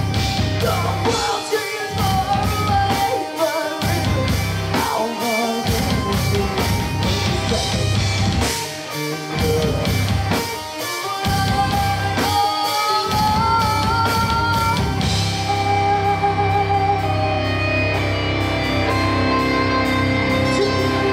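Live rock band playing: electric guitars, bass and drum kit, with a singer. The band plays stop-start, with several short breaks in the first part, then settles into a steadier, held section near the end.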